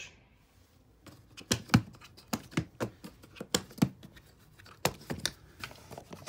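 A black moulded hard-shell guitar case being handled and opened. Its latches and shell give a quick, irregular run of sharp clicks and knocks, starting about a second in after a brief silence.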